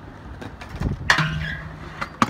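Stunt scooter on skate-park concrete: wheels rolling, a softer knock, then a sharp clack from the landing of a trick about a second in.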